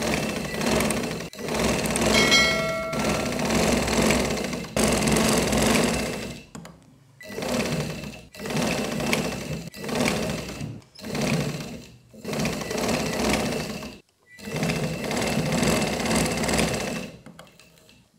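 A domestic sewing machine running in about seven runs of one to a few seconds each, with short stops between them as the seam is sewn. A brief ringing tone sounds about two seconds in.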